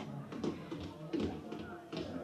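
Radio-drama sound-effect footsteps, a few light irregular taps, with faint voices and music in the background.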